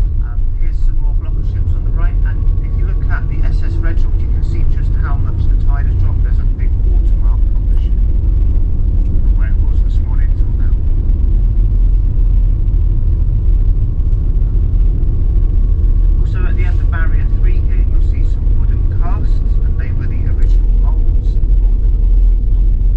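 Steady low rumble of a road vehicle driving, heard from inside the vehicle, with indistinct voices talking now and then.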